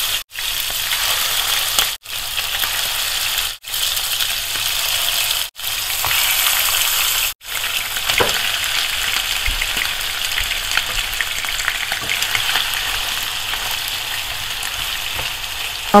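Raw mutton pieces sizzling in hot oil in a frying pan as they are added, a steady hiss that cuts out briefly five times in the first seven seconds.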